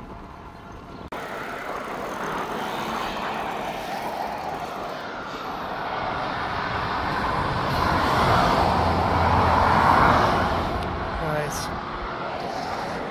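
Road traffic noise from a dual carriageway below: a steady rushing hiss that builds to its loudest about ten seconds in, with a low rumble, then eases.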